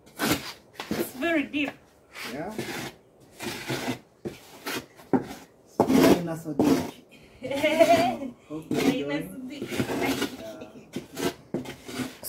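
Hand digging and scraping in sand with a hard flat object: a run of irregular short scraping strokes.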